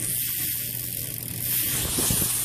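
BMX bike's rear wheel spinning freely as the pedal is cranked by hand: a steady whirring hiss with no knocking now that a loose part has been tightened.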